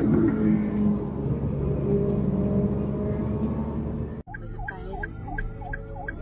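Car driving on a highway, with a steady engine and road hum. About four seconds in, the sound cuts abruptly to a fast, repeating rising-and-falling emergency-vehicle siren at about three cycles a second.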